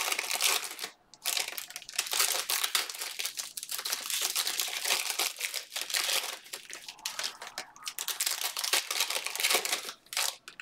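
Foil wrappers of Panini Select football card packs crinkling as hands handle and open them. The crackling runs almost without a break, with a short pause about a second in.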